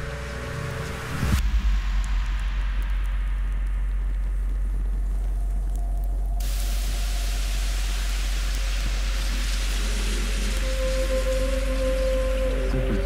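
Horror film score and sound design: about a second in, the music gives way to a sudden hit and a steady, very deep drone with hiss over it. Halfway through, a brighter hiss cuts in, and a held tone enters near the end.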